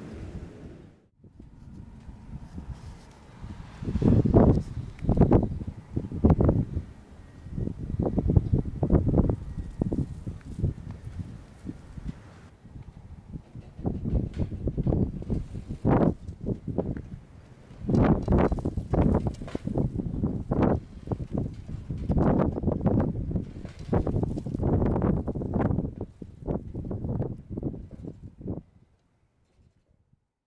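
Outdoor wind noise with rustling, coming in irregular loud gusts and cutting off suddenly near the end.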